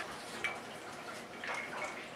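An ice cube dropped into a glass of creamy cold brew cocktail: a faint plop and clink about half a second in, with a few more faint clinks later.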